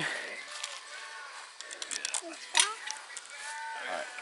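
Soft voices talking in the background, with a few light clicks and one sharper tick about two and a half seconds in.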